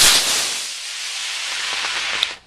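Model rocket's solid-fuel motor firing: a loud, rushing hiss that starts suddenly at ignition, then eases a little and runs on steadily through the burn.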